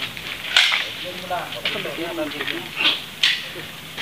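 Indistinct, muffled talking, with two short hissy sounds, about half a second in and near the end; no gunshot is heard.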